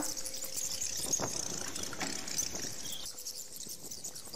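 Faint, steady outdoor background noise with a high hiss and no distinct event.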